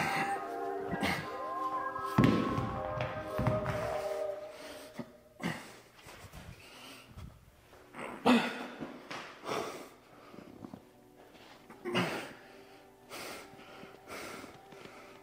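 Heavy rubber hex dumbbells set down onto the rubber gym floor with loud thuds, the loudest about two seconds in, as the heavy pair is dropped for a lighter one in a drop set, over background music. Later come a few short, loud breaths with the reps.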